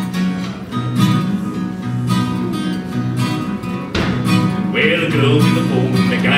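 Acoustic guitar strummed in a steady rhythm, chords struck about once a second. A man's singing voice comes in near the end.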